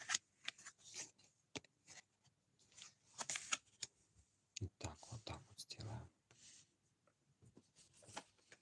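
Tarot cards being slid across and set down on a flat surface as they are laid out in a row: a string of soft, short swishes and rubs, quiet throughout.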